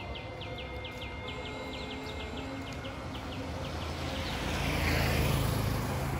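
A motorcycle comes up from behind and passes close by, its engine and tyres growing louder to a peak about five seconds in. In the first half, a bird repeats a short, falling chirp about three times a second, then stops.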